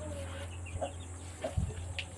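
A few soft, brief clucks from an Aseel chicken, over a low steady hum.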